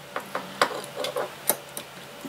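Light, irregular clicks and taps of a small die-cast toy car being handled and set down on a desk.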